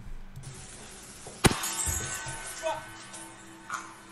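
A wine glass shattering: one sharp crack about a second and a half in, with a short rattle after it, followed by a brief cry from a man. Faint background music runs under it.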